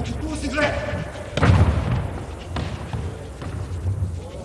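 A thrown handball strikes hard with a loud thud about one and a half seconds in, echoing through a large, empty sports hall.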